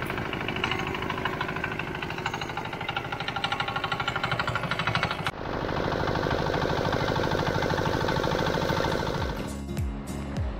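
Small single-cylinder stationary engine driving a roadside sugarcane juice crusher, running with a rapid, even chug while cane is fed through the rollers. The sound changes about five seconds in and breaks off near the end.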